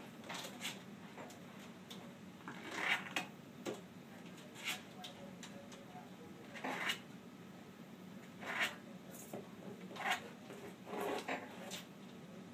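Turtle's claws scraping and scrabbling on the side and rim of a cardboard box in short scratchy bursts every second or two as it tries to climb out.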